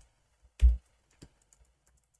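Typing on a computer keyboard: a loud knock about half a second in, then a few light, scattered key clicks.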